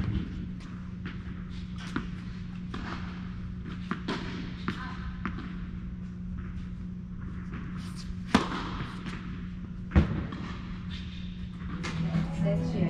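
Tennis balls struck and bouncing in an indoor tennis hall: sharp, echoing thuds a few seconds apart, the loudest near the start and about ten seconds in, over a steady low hum of the hall.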